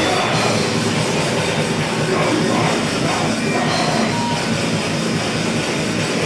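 A heavy band playing loud live music, a dense wall of drums and guitars.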